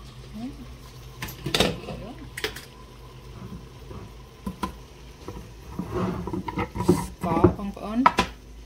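Pot of water heating toward a boil on an electric stovetop: a steady low hum with a few sharp clicks and knocks. Muffled voices are in the background, most noticeably near the end.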